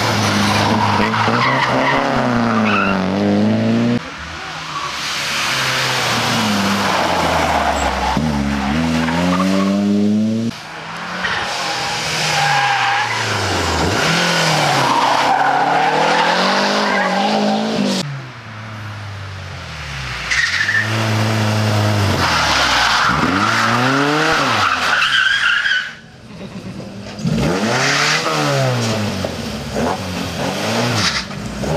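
Historic rally cars driven hard through a tight hairpin, one after another: each engine revs up and down through the gears, with tyre squeal in the corner. The sound changes abruptly several times, about every four to eight seconds, as one car gives way to the next.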